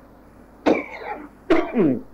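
A person coughs twice, the second cough ending in a voiced sound that falls in pitch.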